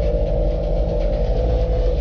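Motorcycle engine running steadily while riding on the road, with wind rumble on the microphone.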